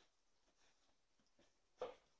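Near silence with faint soft rustles, then one short, sharp click near the end.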